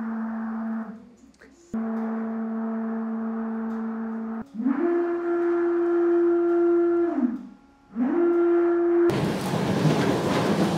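NEMA 23 stepper motor spinning a large turret loaded with a cannon-length bar, giving a steady pitched whine that stops and restarts twice. Then it ramps up to a higher note as the motor accelerates, holds, and glides back down as it decelerates and stops, before ramping up again. Near the end a louder, even rushing noise takes over.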